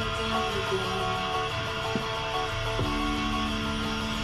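Music with strummed guitar playing on an FM car radio.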